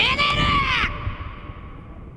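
An anime character's shouted line ending in a hoarse, drawn-out yell whose pitch rises and then falls. The yell cuts off just under a second in, leaving a low rumble that fades out.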